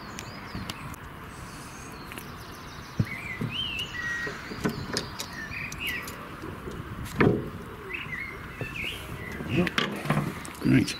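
A songbird singing short warbling phrases from about three seconds in, over a steady outdoor hiss, with a few sharp knocks, the loudest about seven seconds in.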